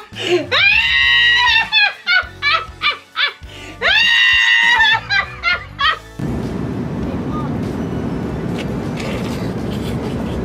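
A woman laughing hard, with a long high-pitched shriek about half a second in and another about four seconds in, and short choppy laughs between them. About six seconds in this gives way to the steady rushing hiss of an airliner cabin.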